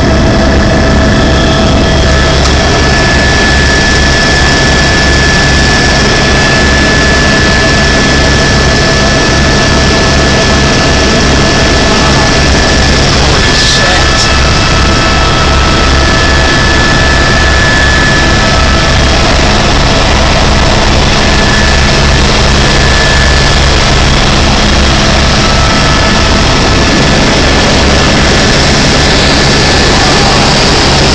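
Helicopter turbine engine and rotor heard from inside the cabin in flight: a loud, steady drone with a rapid low throb from the rotor and a few steady whining tones above it.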